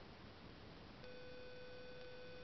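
Faint background hiss, then about a second in a steady, unwavering tone with several overtones starts suddenly and holds.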